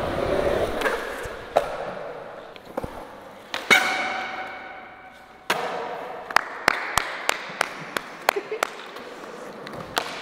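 Skateboard wheels rolling on a smooth concrete floor, broken by sharp clacks of the board's tail and trucks hitting the ground. A hard clack about four seconds in rings on briefly, and a second hit a little later is followed by more rolling and a quick run of clacks.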